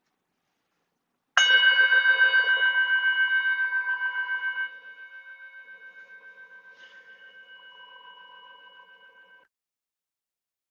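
A meditation bell struck once, marking the start of a guided meditation. It rings with several steady, slightly wavering tones that fade, drop away about halfway through, and cut off suddenly near the end.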